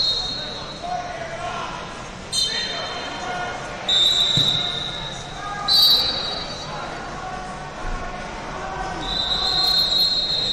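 Referee whistles in a wrestling hall: four shrill blasts spread over several seconds, each held about a second, over a steady background of crowd voices in a large room.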